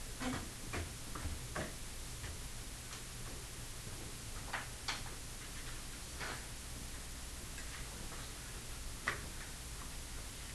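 Quiet classroom room sound during individual work: a steady low hum with scattered, irregular soft clicks and taps.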